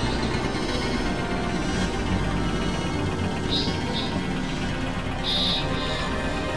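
Experimental synthesizer music: a dense, dark, steady low drone, with short high-pitched bleeping bursts breaking in around three and a half seconds and again near the end.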